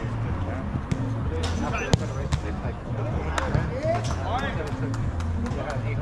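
A soccer ball being kicked on artificial turf: a few sharp thuds, the loudest about two seconds in, with players' distant shouts.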